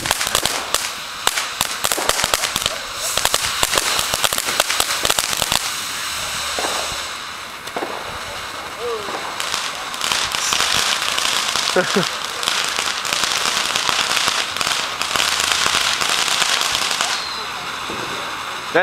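Ground fountain firework spraying sparks: dense crackling for the first five seconds or so, then a steady hiss that grows louder about ten seconds in.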